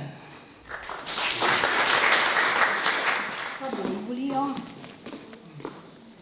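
A small audience clapping for about two and a half seconds after a poem reading, beginning about a second in and fading out, followed by a brief spoken remark.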